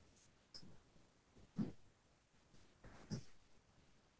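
Near silence: room tone, broken by three faint, brief sounds about a second and a half apart.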